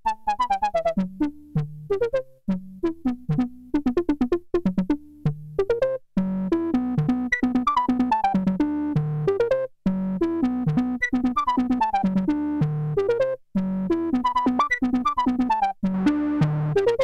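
Soviet Alisa 1377 synthesizer playing a fast, repeating pattern of short notes while it is tested after repair and a MIDI modification. About six seconds in, the notes turn from clipped and separate to fuller and continuous, and the phrase repeats every few seconds.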